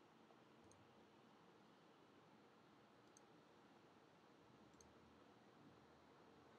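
Near silence: room tone, with three very faint, short high ticks spread through it.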